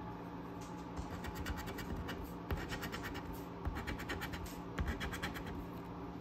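A coin scraping the coating off a scratch-off lottery ticket in quick back-and-forth strokes, in several short bursts with brief pauses between.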